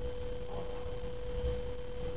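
A steady single-pitched hum, a constant tone in the mid range, over a low background rumble. It runs unchanged under the whole recording, so it comes from the recording setup rather than from anything being shown.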